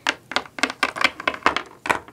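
A small plastic Littlest Pet Shop figurine tapped rapidly against a hard tabletop as it is hopped along, a quick, uneven run of sharp clicks, about five or six a second.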